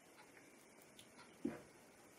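Near silence with faint ticks, then a single short, soft knock about one and a half seconds in: a pint glass being set down on the bar top.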